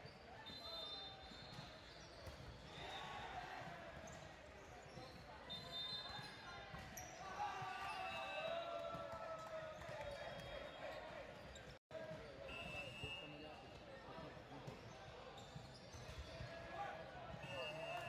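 Indoor volleyball being played in a large gym: ball hits and the short squeaks of sneakers on the hardwood court, under indistinct calls from players and spectators.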